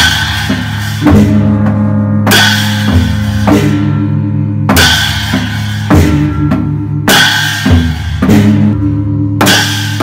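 Northern Thai klong uet ensemble playing: deep strokes on the long drum over steadily ringing hanging gongs, with a pair of large cymbals crashing about every two and a half seconds.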